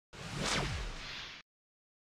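Whoosh transition sound effect: a noisy rush whose pitch sweeps down from high to low, lasting just over a second and cutting off suddenly.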